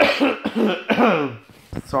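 A person coughing several times in a row, starting suddenly with the loudest cough; he says he has a cough.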